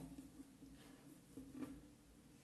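Near silence with a few faint rustles and light ticks as folded fabric is handled and a dressmaker's pin is pushed through it, the clearest about one and a half seconds in.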